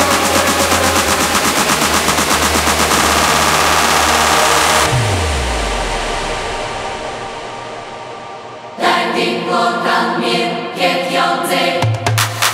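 Melodic techno DJ mix. A driving passage with fast, rapid-fire repeating hits ends about five seconds in with a falling bass sweep. The music then fades into a brief breakdown, and a new melodic section with chords comes in near the end.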